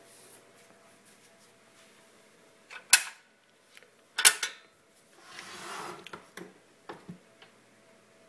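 Handling noise from a heavy stainless steel waffle maker being moved and tipped up on a stone countertop: two sharp knocks about three and four seconds in, then a brief scraping shuffle and a few light clicks.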